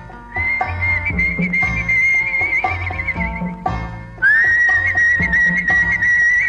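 Instrumental passage of an old Tamil film song: a high, whistle-like melody of two long held notes with vibrato, the second sliding up into place about four seconds in, over a steady drum beat.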